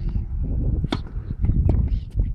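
Tennis racket striking a ball: one sharp pock about a second in, then fainter knocks near the end, over a steady low rumble on the microphone.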